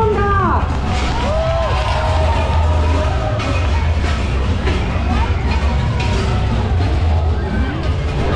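Spectators shouting and squealing, with short rising-and-falling voice cries that are loudest around the start, over loud music with a deep steady low end.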